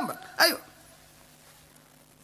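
A single short vocal sound from a man, about half a second in, then low stage room tone.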